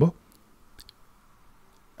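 A pause between spoken sentences: quiet room tone with a few faint, short clicks.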